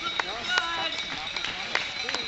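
Runners' footfalls on an asphalt road, a patter of scattered slaps as a group of racers passes close by. Voices of onlookers can be heard briefly near the start.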